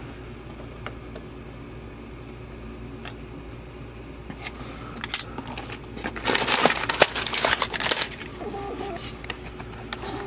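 Rummaging by hand in a cardboard box of sewing machine needle packets and loose needles: rustling and light clattering, loudest from about six to eight seconds in, after a quieter start with a few faint clicks.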